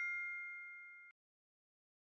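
Ringing tail of a bell-like chime sound effect, a bright ding fading away and cut off abruptly about a second in, followed by dead silence.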